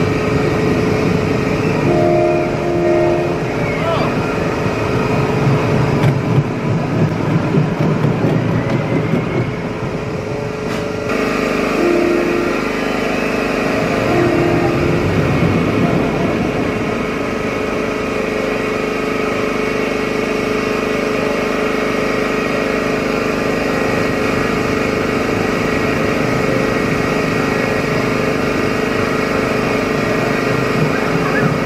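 Steel family roller coaster train rolling along its track with a steady running noise and hum, mixed with riders' voices.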